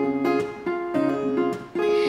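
Acoustic guitar strumming chords, a new strum about once a second, each chord left to ring.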